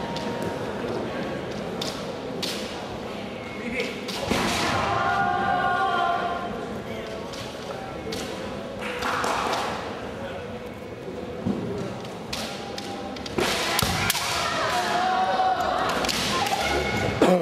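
Kendo fencers shouting drawn-out kiai as they attack, about four seconds in, again around nine seconds, and near the end. Their cries come with sharp clacks of bamboo shinai and stamping feet on the wooden floor.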